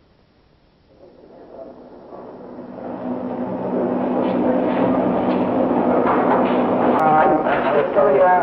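Near silence that swells over a few seconds into an indistinct murmur of several voices over a steady low hum, with one voice becoming clearer near the end and a single sharp click just before it.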